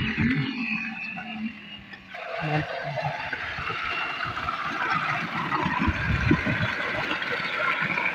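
Water gushing from a solar tube well's discharge pipe and splashing into a concrete tank, a steady rush that sets in about two seconds in. It comes just after the DC pump has been switched on.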